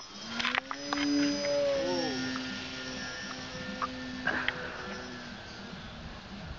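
The motor and propeller of a foam RC model plane running at full throttle, a steady whine at launch that fades and drops slightly in pitch as the plane flies away. Scattered sharp clicks come through it.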